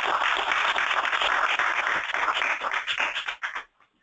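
Audience applauding, a dense patter of many hands clapping that dies away about three and a half seconds in.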